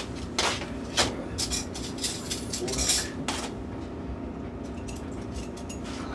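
A kitchen drawer and cutlery clattering as an eating utensil is fetched: a string of sharp knocks and clinks over the first three and a half seconds, then it stops.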